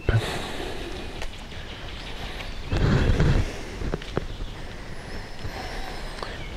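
Paracord being handled and drawn back through a loop, with soft rustling and a few light clicks over the rush of wind on the microphone. A louder low rush comes about halfway through.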